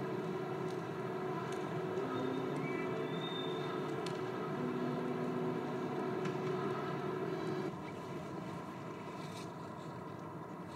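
A steady drone of several held tones over a low rumble, with a few brief higher tones entering and leaving; about three quarters of the way through it drops in level and its lower tones stop.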